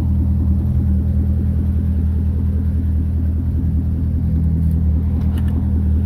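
Corvette's 6.2-litre V8 idling steadily with a low, even rumble. A few light clicks near the end as the driver's door is opened.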